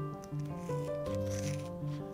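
Background music with held, changing notes, over a scissors snip through a Nike Zoom Air cushioning bag about one and a half seconds in. No hiss of escaping air is heard as the bag is cut open.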